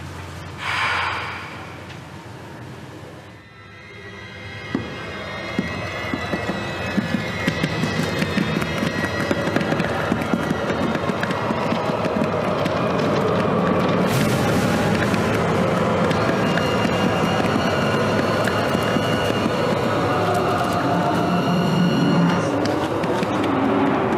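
Suspenseful film score: a short whoosh about a second in, then after a brief drop the music builds steadily louder, thick with quick ticking strokes.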